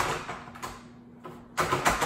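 Two bursts of rustling, handling noise: one at the start that fades away, and one near the end that ends in a low bump.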